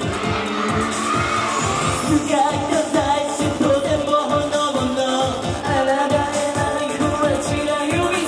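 Male idol group singing a Japanese pop song into handheld microphones over a backing track with a steady, driving beat.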